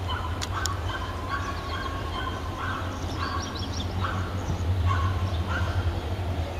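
Diesel engine of a CFR LDE (class 60-type) diesel-electric locomotive running with a steady deep rumble as it creeps forward on shunting duty. Short high-pitched squeals come and go on and off over it.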